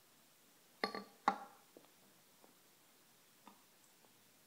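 A stemmed glass beer chalice set down on a stone countertop: two sharp, ringing clinks about a second in, the second louder, followed by a few faint ticks.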